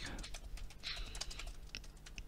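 Computer keyboard being typed on: a quick, irregular run of key clicks as a sentence is typed.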